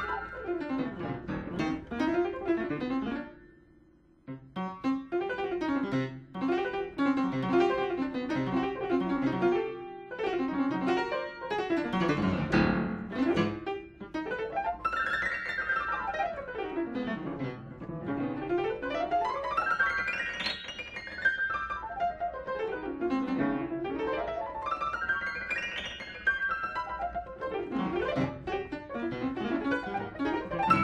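Solo piano improvisation. It breaks off briefly about four seconds in, then carries on with dense figures and a loud low passage past the middle, followed by fast runs sweeping down and back up the keyboard several times.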